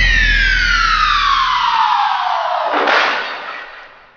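Electronic synth down-sweep: one pitched tone slides steadily downward over about three seconds, over a deep bass tone that dies away. A short noisy whoosh comes about three seconds in as the sound fades out.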